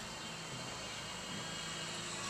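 Faint, steady outdoor background noise with a low, even hum and no distinct events.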